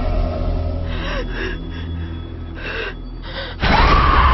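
Horror-trailer soundtrack: a low, dark drone under a few sharp gasping breaths, then a sudden loud hit near the end with a high tone sliding upward.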